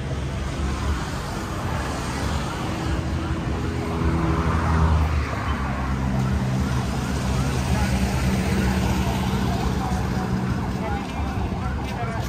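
Busy street ambience: motor-vehicle engines running and passing, one louder vehicle passing about four to five seconds in, over indistinct voices of people.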